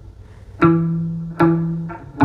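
Ibanez semi-hollow electric guitar: two single low notes picked slowly, about a second in and again near the end, each ringing and fading out, as a single-note line is played slowly for a lesson.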